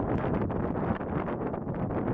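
Wind buffeting the camera's microphone, a gusty, uneven rushing noise.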